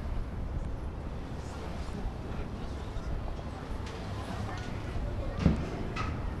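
A compound bow shot near the end: a single sharp thump as the string is released, heard over a low murmur of arena background noise.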